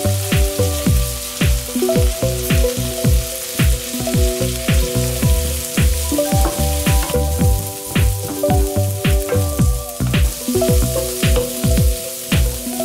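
Rice, diced carrots and peas sizzling as they fry in a pan while a wooden spoon stirs them, with a steady hiss. Background music with a steady beat plays over it.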